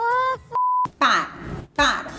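A single short, steady beep tone about half a second in, with dead silence around it, the kind of bleep edited in to censor a word. It comes just after a high-pitched cartoon voice and is followed by speech.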